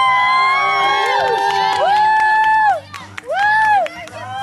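Several people whooping: long, high-pitched held cries that overlap at first, then come one at a time, each sliding up into the note and falling off at its end. Faint background music runs beneath.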